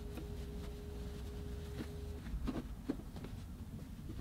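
Soft rustling and handling of stretchy leggings fabric as it is folded, rolled and tucked into a wooden dresser drawer, with a few faint taps. A faint steady hum stops about two seconds in.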